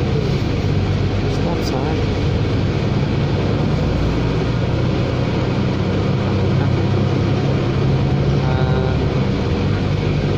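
Inside a New Flyer Xcelsior XD60 articulated diesel bus on the move: a steady engine and drivetrain drone with road noise, growing a little louder past the middle.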